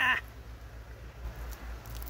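A woman's short startled cry, "Ah!", at the very start, a reaction while squashing gypsy moth pupae on a tree trunk with a stick; after it only a low steady rumble.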